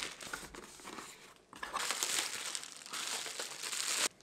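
Plastic bubble wrap crinkling and rustling as it is pulled off a box by hand, faint at first and louder after about a second and a half.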